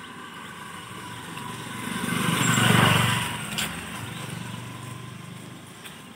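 Motorcycle passing close by: its engine grows louder to a peak about three seconds in, then fades away.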